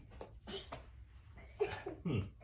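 Quiet shuffling and faint knocks as a small child clambers onto a man's back mid push-up, with a brief voice sound near the end.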